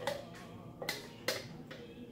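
Three light, sharp clicks of a spatula and plastic measuring cup knocking together as a cream and milk mixture is poured and scraped from the cup into a glass mixing bowl.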